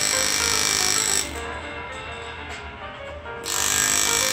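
Engraving handpiece driving a flat graver into a metal plate, a fast mechanical buzzing as it chips away the background. It runs in two spells, stopping for about two seconds in the middle.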